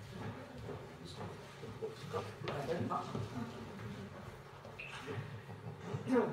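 Quiet, indistinct speech in a room: low talk too faint to make out.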